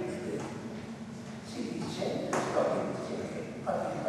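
A voice speaking in short phrases with pauses, echoing in a large church.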